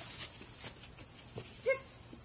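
A dog gives one short, high whimper near the end, over a steady high drone of insects.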